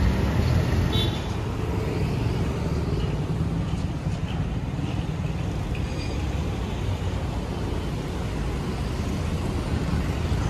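Steady rumble of a moving road vehicle with traffic noise around it, a little louder for the first second.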